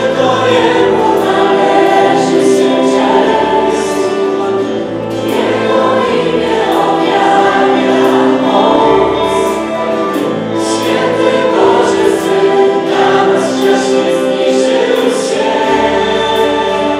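Worship band performing a song: a group of women and men singing together into microphones over strummed acoustic guitar and a full band.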